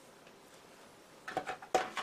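Quiet room, then a quick cluster of light knocks and clatters over the last part, loudest just before the end: a plastic pitcher, its lid and the utensils in a bucket being handled on a work table.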